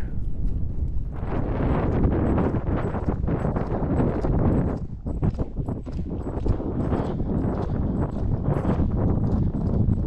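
Hoofbeats of a horse being ridden over sandy desert ground, heard from the saddle, with wind rumbling on the microphone. The sound dips briefly about halfway through.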